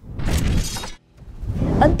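Transition sound effect for an on-screen graphic wipe: a burst of noise about a second long, then a low swell rising into the next spoken line.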